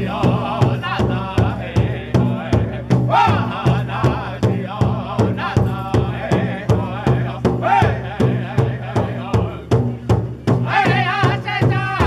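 Powwow drum group: several men striking one large shared hand drum in unison with padded drumsticks in a steady, even beat, while singing in high, wavering voices. The singing swells near the end.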